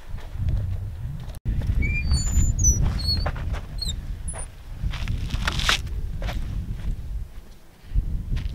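Wind rumbling and buffeting on the microphone. Small birds chirp several times about two to four seconds in, and there is a sharper knock about halfway through. The sound cuts out for an instant at about a second and a half.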